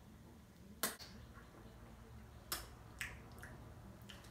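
A few short, sharp mouth smacks, the loudest about a second in and three more in the second half, from chewing a caramel candy.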